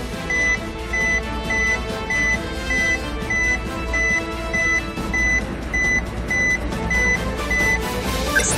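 Suspense music under a steady high electronic beep, repeating a little less than twice a second, about fourteen beeps in all, which stops just before the end. This is the countdown cue while the scale result is pending.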